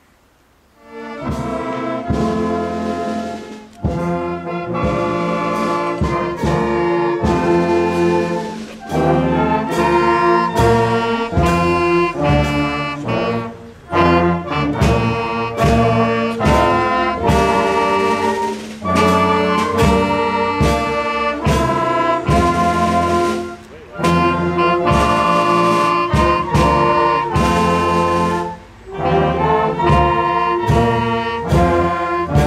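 A wind band with brass starts playing about a second in and carries on in phrases, with brief breaks between them.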